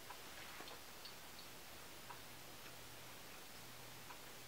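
Faint chewing of a stiff gummy multivitamin: a few soft, scattered mouth clicks over quiet room tone.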